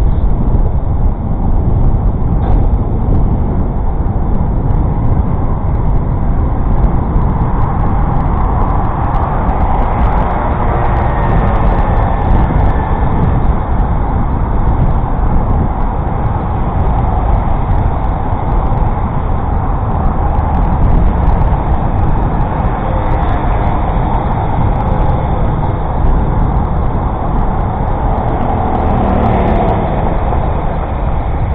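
Steady rumble of wind and road noise at a camera mounted on a moving bicycle, with motor traffic running on the road alongside. Near the end a passing vehicle's sound falls in pitch.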